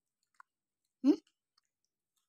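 A man eating: a small mouth click, then about a second in a brief rising voice sound like a short 'hm', with a faint tick after it.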